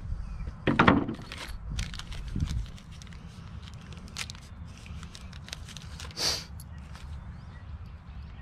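A wooden knock about a second in, as a piece of wood is handled on the workbench, then small clicks and crinkles of a carded plastic package of hanger bolts being handled and opened, with a short scratchy rasp near the end.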